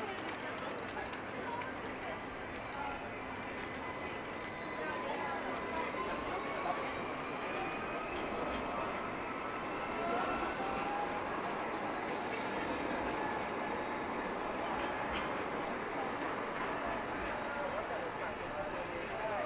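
Busy city street ambience: indistinct chatter of passers-by over steady street and traffic noise.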